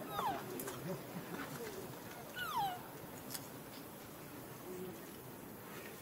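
Two short, high calls from a macaque, each sliding down in pitch, one right at the start and a second about two and a half seconds in.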